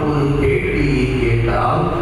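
A voice chanting a liturgical prayer on long held notes, moving to a new note about one and a half seconds in.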